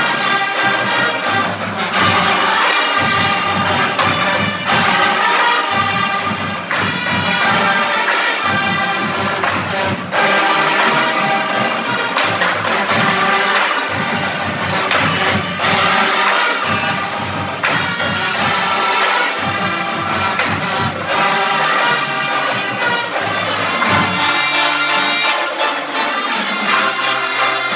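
Marching band playing live: a brass section of trumpets and sousaphones over drums, with regular drum hits running under the melody.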